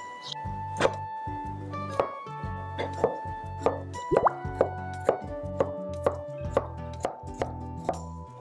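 Background music with a kitchen knife chopping celtuce on a wooden cutting board: sharp, irregular knocks about every half second.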